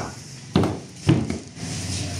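Three sharp wooden knocks about half a second apart as pine strips are set and pressed into place on a wooden door.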